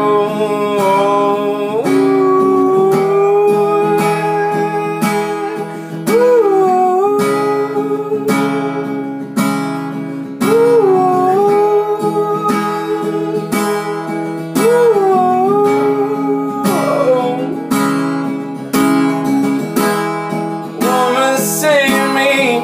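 Acoustic guitar strummed steadily, with a man's voice holding long wordless notes over it that bend up and back down several times.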